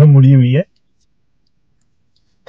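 A man's voice speaking briefly for about half a second, then near silence: the car's sound is gated out of the recording.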